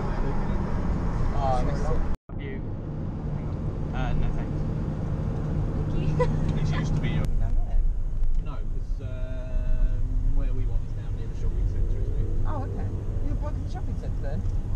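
Steady low rumble of road and engine noise heard from inside a moving car's cabin, with faint voices in the car.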